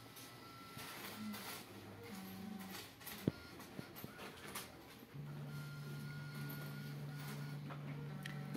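Quiet counter-side room sounds: faint clicks and handling noises, with a sharp tap about three seconds in, then a steady low machine hum that starts about five seconds in.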